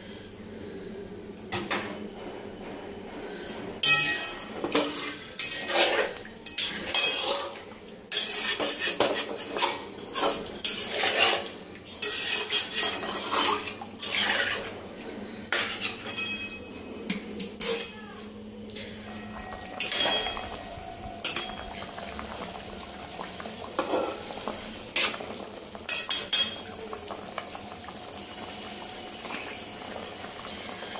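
A flat metal spatula scraping and knocking against a metal kadai as watery curry is stirred, in irregular clusters of clinks and scrapes. The clatter thins out and quietens near the end.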